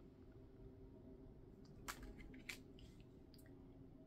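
Near silence: faint room hum with a few soft clicks and taps about two seconds in, as two oracle cards are laid down on a table.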